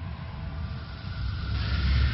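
Cinematic intro sound effect: a deep, steady rumble, with a hissing whoosh that swells in about one and a half seconds in.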